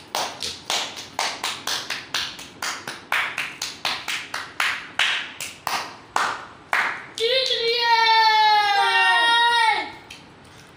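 A boy clapping his hands in a quick regular rhythm, about three to four claps a second, for some seven seconds. Then a child's long, loud shout that falls in pitch at the end.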